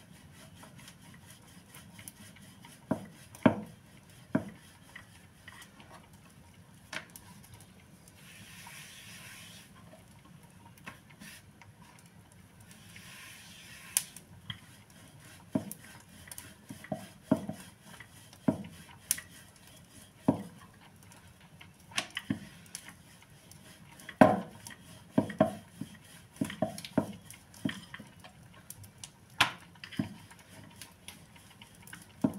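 Wooden rolling pin on a wooden board as flatbread dough is rolled and patted out: irregular wooden knocks and taps, thickest and loudest near the end, with two brief soft rubbing hisses in the first half.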